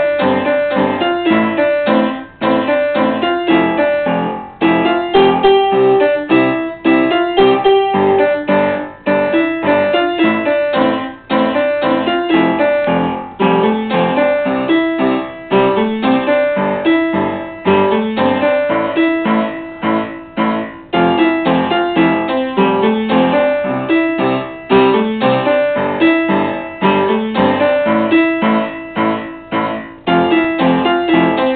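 A Yamaha piano played with both hands: a repeating pop phrase of melody over chords, with short breaks between phrases.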